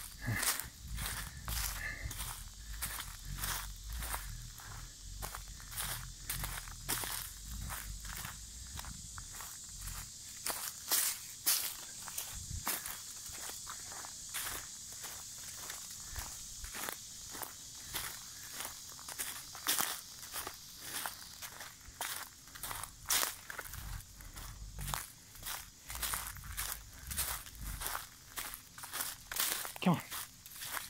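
Footsteps crunching through dry leaf litter on a forest floor, a steady walking pace of about two steps a second.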